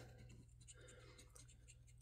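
Near silence with faint scratching on a scratch-off lottery ticket.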